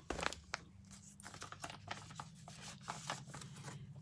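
Paper mail being handled: faint rustling and small scattered clicks as an envelope and greeting card are opened and pulled out, over a steady low room hum.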